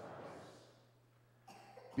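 A congregation speaking a response in unison, a blurred murmur of many voices that fades out in the first second. Then a quiet room, until a single man's voice begins at the very end.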